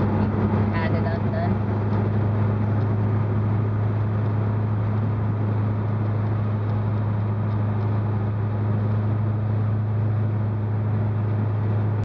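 1964 Dodge 440 cruising at a steady speed, heard from inside the cabin: a steady low engine drone that holds one pitch, over tyre and wind noise.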